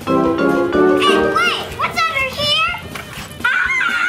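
Background music opens with a short run of held notes, then a child's high voice calls out over it.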